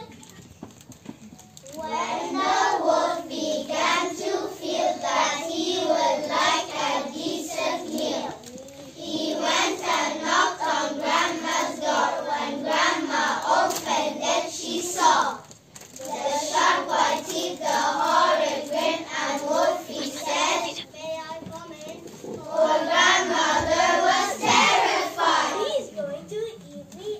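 A group of young children singing together in unison, in phrases separated by short breaks.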